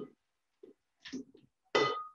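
A stainless-steel cooking pot clanking against a blender jar as a soup mixture is poured from it. There are a few faint knocks, then one sharp metallic clank near the end that rings briefly.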